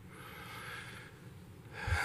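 A man's faint intake of breath, picked up by a microphone.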